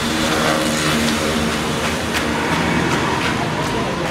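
Steady road traffic noise outdoors, with faint voices in the first couple of seconds and a few sharp clicks near the end.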